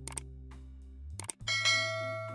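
Subscribe-button sound effect over soft background music: two quick mouse clicks, then a bright bell ding about one and a half seconds in that rings out and slowly fades.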